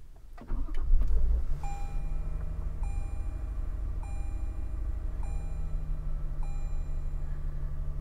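Toyota Tundra pickup engine started by push button: it cranks and catches about half a second in, flares briefly, then settles to a steady idle. Over the idle the truck's warning chime sounds five times, about once every 1.2 seconds.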